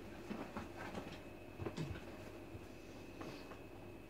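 Quiet room with a faint steady high-pitched tone and low hum, broken by a few light knocks and rustles.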